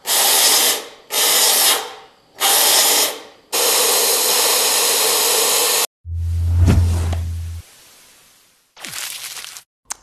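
Pneumatic cavity-wax (Movil) spray gun spraying anti-corrosion compound in hissing bursts: three short ones, then one of about two and a half seconds, and a short one near the end. About six seconds in, a low hum with a tone that rises and falls.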